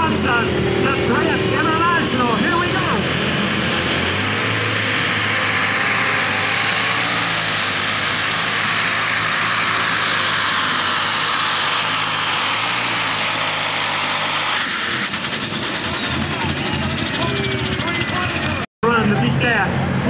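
Super Stock pulling tractor's turbocharged diesel engine at full power through a pull. A high whine climbs over the first few seconds, holds for about ten seconds, then sinks away as the engine comes off power near the end.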